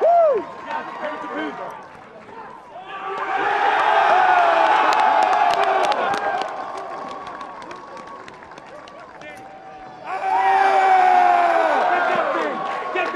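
A group of players and fans cheering and shouting together in celebration, many voices overlapping; the shouting swells loud about three seconds in and again about ten seconds in.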